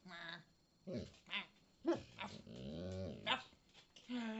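A dog vocalizing in a run of short, pitch-bending whines and grumbles, with a longer, lower growl-like grumble about halfway through. This is the talkative chatter of a dog that is very vocal by nature, not a warning growl.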